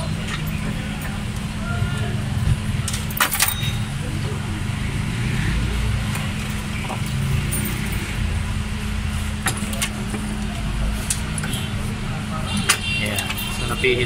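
Car repair shop sound: a steady low hum with a few sharp metallic clinks of hand tools on the suspension, about three seconds in, past nine seconds and near the end.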